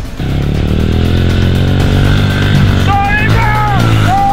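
Small pit bike's engine running steadily as it is ridden, heard under loud backing music that starts just after the beginning.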